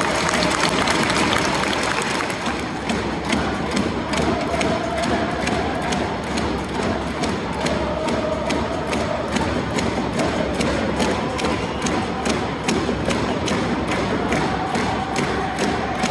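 Football supporters in a stadium chanting together over a steady drum beat of about three strikes a second.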